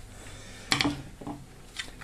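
Handling noise as a hand picks up a plastic clamp meter from the bench: a short knock and rustle about three-quarters of a second in, then a faint click near the end.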